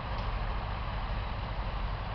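Wind buffeting the microphone: a steady, uneven low rumble with a light hiss over it.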